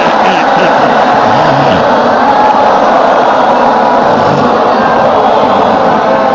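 Many voices reciting Quranic verses together in unison, a loud, dense, steady chorus in which no single voice stands out.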